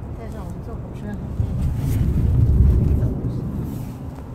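Car tyre and road rumble heard inside the cabin, swelling for about two seconds midway as the car rolls over the railroad crossing, then easing off.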